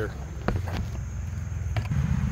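A steady low rumble, with a few light sharp clicks about half a second in and again near the end.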